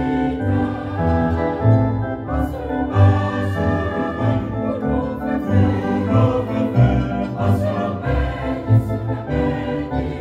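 Mixed choir of men and women singing an old Seventh-day Adventist hymn in harmony, with low bass notes underneath.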